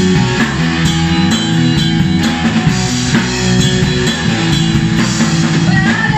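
Rock band playing live: guitar, bass and drum kit in a steady instrumental passage with no singing.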